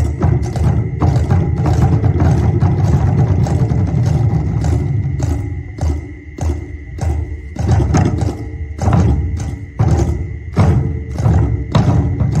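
Live drum ensemble playing loudly: sharp clacking strokes in a fast, uneven rhythm over a heavy low drum sound, with a thin steady high tone running underneath.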